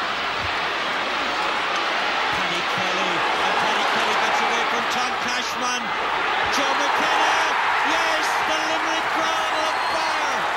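Stadium crowd noise at a hurling match, a dense roar with voices shouting through it, growing louder about halfway through.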